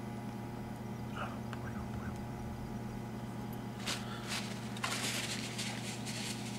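Faint rustling and brushing of hands handling a small tube fly at a fly-tying vise, heavier from about four seconds in, over a steady low electrical hum.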